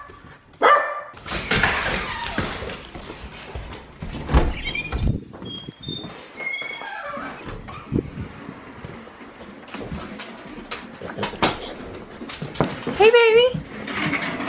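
Small pet dog whining and yipping at someone coming in the door: a few short high calls midway, and a longer wavering whine near the end, with knocks and footsteps around it.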